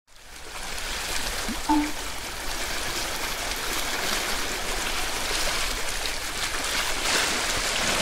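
A steady rushing, water-like noise that fades in over the first second and then holds even. A brief pitched blip, the loudest moment, comes a little under two seconds in.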